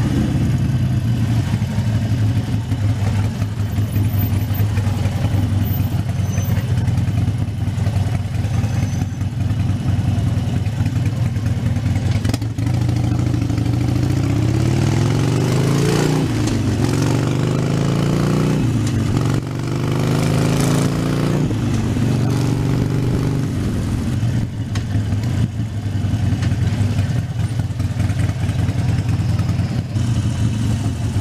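Harley-Davidson Sportster 72's 1200 cc V-twin running steadily at low speed, rising in pitch twice about halfway through as the bike accelerates.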